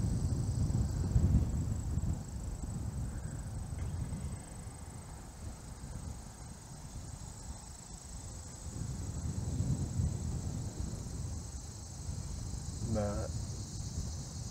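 Steady high-pitched insect chorus, like crickets or cicadas trilling, with an uneven low rumble beneath it.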